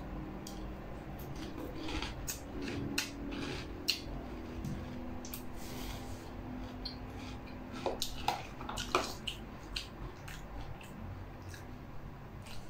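Eating chips soaked in pickle juice: a metal spoon clicking and scraping in a plastic tub, with chewing, heard as scattered faint clicks.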